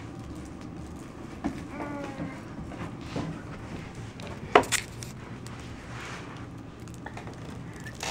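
Light knocks and taps from a baby handling stiff cardboard board books, the sharpest about halfway through, over a low room hum, with a short faint voice about two seconds in.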